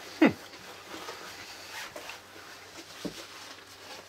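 A man's short falling "mm" near the start, then quiet mouth sounds of chewing a Pepsi-soaked Oreo cookie, with a small click about three seconds in.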